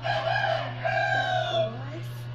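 A rooster crowing once: one drawn-out crow in two parts, the second part dropping in pitch at the end.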